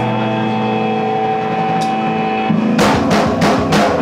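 Live rock band: electric guitar and bass let held notes ring on. Near the end a drummer comes in with a quick fill of four or five snare and drum hits, about four a second.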